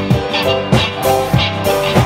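Live band playing rock music: a drum kit keeps a steady beat of about three hits every two seconds under bass and held chords.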